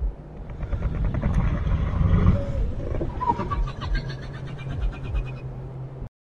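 Dark horror sound design: a low rumbling drone with irregular deep thumps that swells into a growling, fast-rattling build about halfway through, then cuts off suddenly at the end.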